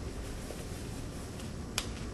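A disposable exam glove's cuff snaps once, sharply, near the end as the glove is pulled on. A low steady room hum lies beneath.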